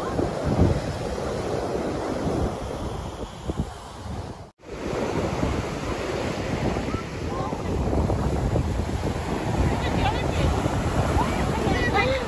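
Ocean surf breaking and washing up a sandy beach, with wind buffeting the microphone. The sound drops out briefly about four and a half seconds in. Faint voices come in near the end.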